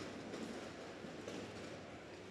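Steady arena noise in a gymnasium during a robotics competition match: competition robots driving and a crowd, making a continuous rumble with a few faint knocks.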